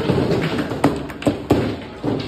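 Table football in play: the hard ball clacks as it is struck by the rod figures and knocks against the table, with three sharp knocks in the second half.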